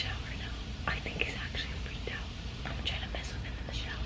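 A woman whispering to the camera, over a steady low background hum.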